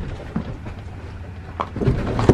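A horse's hooves striking pavement as it is led at a walk: a few separate clops, two close together near the end.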